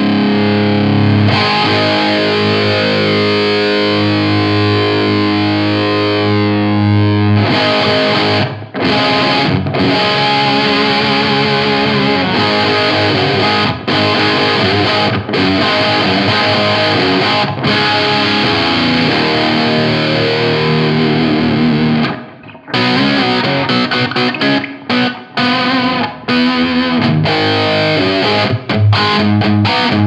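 Electric guitar played through a NUX Plexi Crunch overdrive pedal, giving a crunchy Plexi-style distorted tone. Held chords ring for the first several seconds, then give way to faster riffing with short stops, and choppy staccato riffs near the end.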